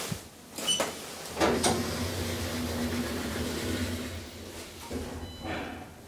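KONE-modernised elevator car: a short beep as a floor button is pressed, then the car's sliding doors closing with a thud, followed by a steady low hum of the car travelling that fades after a few seconds. Another short high beep comes near the end.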